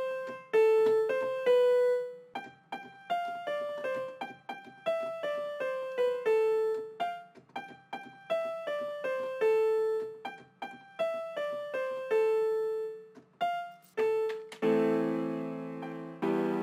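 A melody from a software instrument in FL Studio, single struck notes that decay quickly, rising and falling in pitch at an uneven pace. Near the end, sustained chords enter under the melody as the full progression plays.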